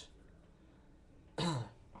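A man clears his throat once, briefly, about a second and a half in, after a quiet pause.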